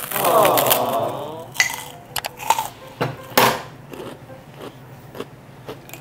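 A brief wordless vocal sound at the start, then a scatter of sharp clicks and crunches: bites into a crisp cracker and a spoon tapping in a small cup, trailing off in the second half.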